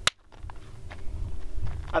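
A single sharp hand clap close to a sound level meter's microphone, peaking at about 137 dB, as loud as the suppressed .224 Valkyrie shots measured at the shooter's ear. A low rumble follows.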